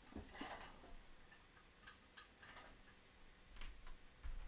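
Near silence with a few faint, irregular clicks and taps, as of a hand working the controls of a small mixer.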